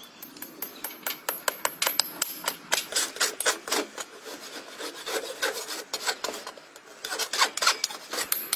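Farrier's rasp filing the wall of a freshly shod horse's hoof in quick, repeated strokes, a few each second.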